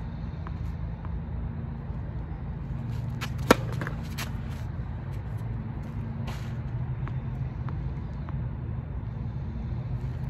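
Tennis ball being bounced on a hard court before a serve, heard as a few light taps. One sharp, ringing pop of a ball struck by a racket comes about three and a half seconds in. A steady low rumble runs underneath.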